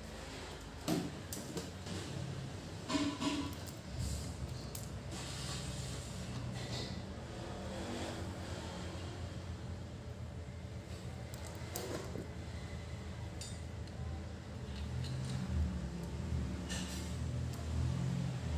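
Short metallic clicks, clinks and taps of a refrigerant gauge hose and its brass fittings being handled and connected at a freezer compressor's service pipe, scattered over a steady low hum.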